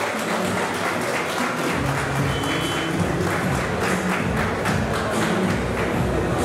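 Southern lion dance percussion: a big drum beating with clashing cymbals in a steady rhythm, the heavy drumbeats coming in strongly about two seconds in.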